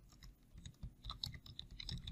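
Faint, quick, irregular clicking of computer keyboard keys as text is typed.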